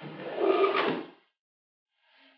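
A wooden chair scraping back across the floor as someone gets up from a table, lasting about a second and ending with a knock, after which the sound cuts off abruptly.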